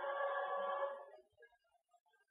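Bolt motion-control camera robot's servo motors whining as the arm runs a fast move, a steady cluster of tones that fades out just after a second in as the move ends.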